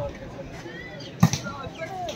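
A volleyball served, the hand striking the ball with one sharp smack about a second in, over scattered crowd voices.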